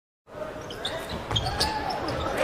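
Basketball bouncing on a hardwood court in an arena, with thumps about a second and a half in, starting after a brief silence.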